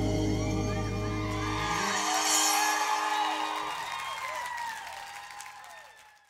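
The band's final chord on acoustic guitars and bass rings out, and the bass stops about two seconds in. The studio audience cheers and whoops over it, and the whole sound fades out near the end.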